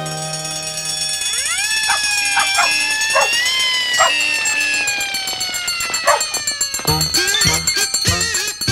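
A pack of cartoon dalmatians howling together in long, siren-like rising and falling notes, with a few short yips among them. It comes over the last held chord of a children's song, and new bright music starts near the end.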